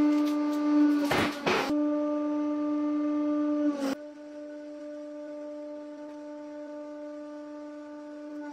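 Hydraulic press running with a steady, horn-like hum with overtones. About a second in there is a short loud crunch as the object under the ram gives way. Just before four seconds there is a click, and the hum sags slightly and goes on more quietly.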